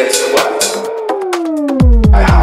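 Electronic dance music from a DJ mix: a held synth tone slides steadily down in pitch from about halfway through over quickening hi-hats, and a heavy kick drum and bass drop in just before the end.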